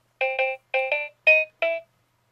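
A 1992 VTech Sesame Street Super Animated Talking Computer toy laptop playing its electronic power-on jingle just after being switched on: a quick tune of about six short beeping notes.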